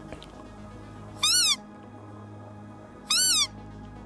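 Hand-blown predator call (vabilica) sounded twice, about two seconds apart, each a short, loud squeal that rises then falls in pitch, used to lure game. Soft background music runs underneath.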